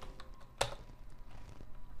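Computer keyboard being typed: a few light key clicks, with one sharper click a little over half a second in.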